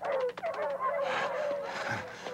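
A cartoon dog whining and yelping, in short falling cries, with a quick run of clicks at the start.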